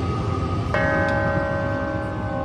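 Marching band front ensemble playing a slow, eerie passage: over a low, rumbling bed, a chord is struck about three-quarters of a second in and rings on, slowly fading.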